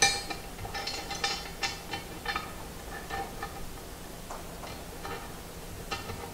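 Small metal parts clinking and ticking as a sliding T-nut and bolt are handled and fitted into the slot of an aluminium T-slot extrusion with a ball-end Allen wrench. A sharp click at the start and a run of ringing clinks over the first couple of seconds, then sparse, fainter ticks.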